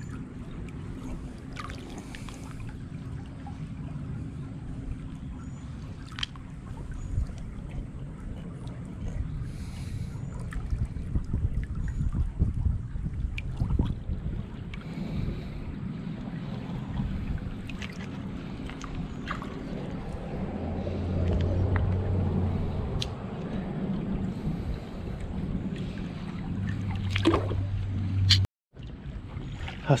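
A hand swishing and splashing through shallow water over a gravelly bed, stirring up silt, with scattered light clicks.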